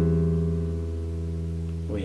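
Nylon-string classical guitar letting a strummed C/E chord (C major with E in the bass) ring out, slowly fading, then damped near the end.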